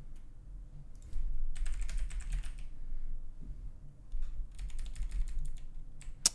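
Computer keyboard typing in two quick bursts of keystrokes, the first about a second in and the second near the end, as a search term is entered.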